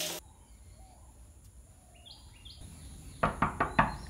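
Knocking on a wooden door: about five quick raps in the last second. Faint bird chirps come shortly before.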